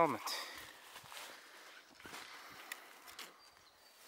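Faint footsteps and rustling in dry leaf litter on a forest floor, with scattered small clicks, and a few faint high chirps near the end.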